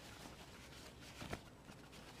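Faint handling noise from a cardboard box wrapped in plastic, with a light rustle or tap a little past the middle; otherwise quiet room tone.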